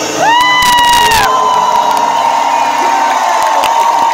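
Concert crowd cheering and screaming as a song ends. A high-pitched scream close by rises at the start and is held for about a second, and a long steady high tone carries on over the cheering until near the end.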